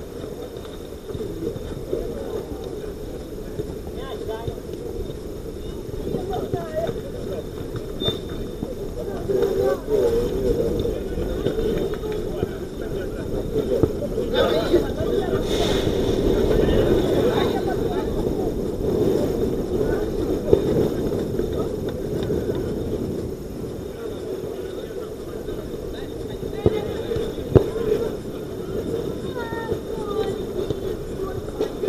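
Players' distant shouts and calls during a small-sided football game on an artificial pitch, over steady outdoor background noise, with a few sharp knocks of the ball being kicked, the loudest about two-thirds of the way through and near the end.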